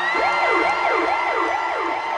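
A siren sound effect played loud over the arena PA in a hip-hop DJ set: a held tone slides up at the start, then fast up-and-down yelp sweeps repeat about four times a second.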